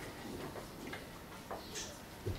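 Quiet room tone in a pause, with a couple of faint short clicks about one and a half seconds in.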